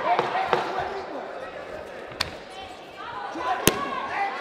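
Sharp impacts from a kickboxing bout, gloved punches and kicks landing, a few times across the span, with the loudest one near the end. Shouting voices run under them.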